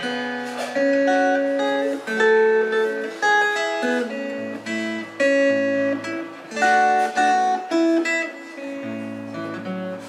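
Acoustic guitar played solo, fingerpicked melody and chord notes ringing over a moving bass line.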